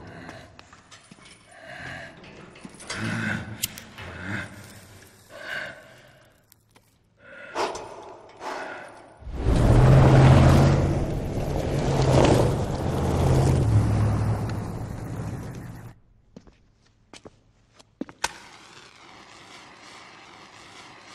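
Off-road SUV's engine running and tyres crunching on a dirt track as it drives fast past, loud for about seven seconds from about nine seconds in, then stopping abruptly. Quieter scattered sounds come before it, and a few clicks and a faint hum after.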